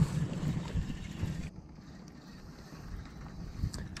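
Wind buffeting the camera microphone over open water, with a low steady rumble; louder for the first second and a half, then quieter.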